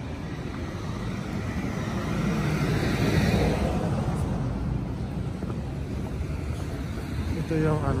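Street traffic: a car passes on the road, its tyre and engine noise swelling to a peak about three seconds in and then fading under a steady background of traffic. A voice starts near the end.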